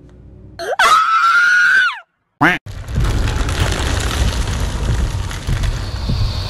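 A high-pitched scream held for over a second, rising at the start and dropping off at the end, then a short second cry. From about three seconds in, a steady loud noise that is heaviest in the low end takes over.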